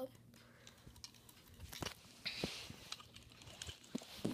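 Faint handling sounds: a few light clicks and a brief rustle as small die-cast toy cars are picked up and moved on a cloth bedspread.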